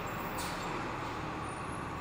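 Steady low background rumble, with a brief faint hiss about half a second in.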